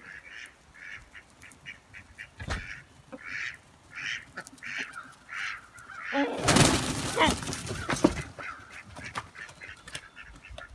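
A run of short, repeated bird calls, about two or three a second, from a free-ranging backyard flock and a crow. About six seconds in comes a louder, rustling burst of noise with a few squawks that lasts about two seconds, then fainter calls again.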